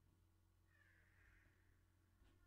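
Near silence: room tone with a low hum, and a very faint, brief high sound lasting under a second, about a second in.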